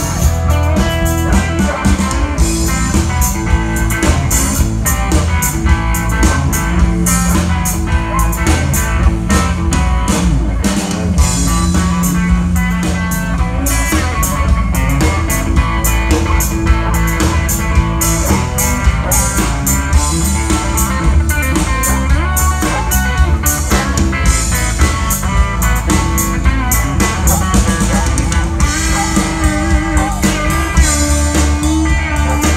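Live blues-rock band playing an instrumental passage: a Telecaster-style electric guitar plays lead lines over a drum kit and a heavy low end, loud and without a break.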